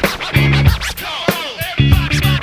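Funk band track in an instrumental break: turntable scratching, quick rising and falling squiggles of a record pushed back and forth, over a bass line and drums.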